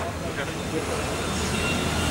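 Steady background noise with a low, even hum, getting slightly louder, in a gap between a man's spoken phrases.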